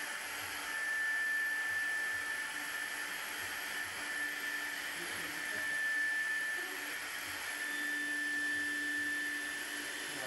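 Electric air pump running steadily, blowing air into an inflatable pool: a steady motor whine over a rush of air, swelling slightly in loudness now and then.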